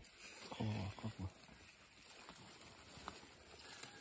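Faint rustling and scraping of sweet potato vines and soil as hands dig out tubers, with a few small ticks. A brief murmured voice comes in just after the start.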